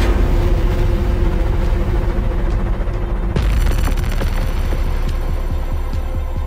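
Horror-trailer score: a sudden heavy boom opens a loud, deep rumbling drone with a held low tone under it. A second sharp hit lands about three and a half seconds in.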